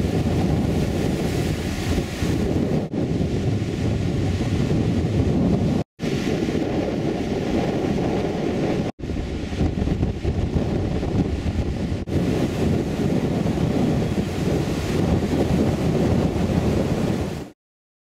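Rough sea surf breaking on a sandy beach, with wind buffeting the microphone. The sound is steady, broken by brief drop-outs a few times where shots are cut together, and it fades out just before the end.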